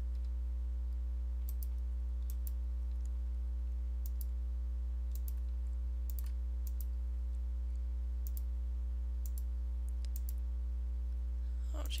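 Computer mouse clicking, short sharp clicks often in close pairs at irregular intervals, over a steady low electrical hum.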